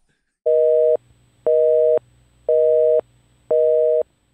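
Telephone busy signal: a steady two-note tone beeping in even half-second pulses about once a second, four times.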